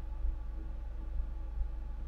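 Steady low hum with a faint hiss behind it: background noise in the recording, with no distinct sound event.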